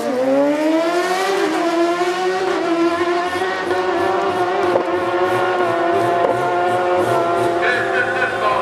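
Two sport motorcycles launching together off a drag strip start line and running at full throttle down the quarter mile. The engine note climbs steeply for the first couple of seconds, then holds high and steady as the bikes pull away.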